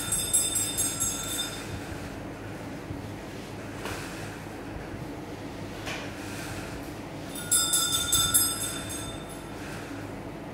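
Thin jute twine squeaking with a high, ringing squeal as it is pulled taut and wound onto a Maltese firework shell, twice, each about a second long, with faint knocks between.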